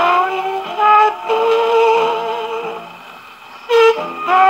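A 1951 Cetra 78 rpm record playing on a portable gramophone: a woman singing with orchestra, holding one long note with vibrato. The music drops low for a moment near the end before a loud note comes back in.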